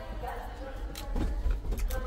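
Faint voices in the background over a steady low hum, with a few short clicks.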